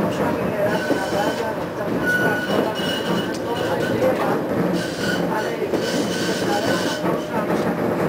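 Konstal 105Na tram running on its rails, heard from inside the car: a steady rumble of wheels and running gear with short, thin high-pitched squeals coming and going as it draws into a stop.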